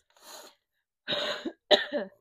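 A woman coughing twice in the second half, the second cough sharper, after a faint breath in.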